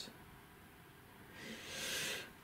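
Quiet room tone, then near the end a soft breathy hiss that swells and fades over about a second: a person breathing out close to the microphone.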